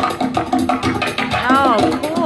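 Upbeat background music with a steady percussive beat. Near the end a voice calls out once, its pitch rising and then falling.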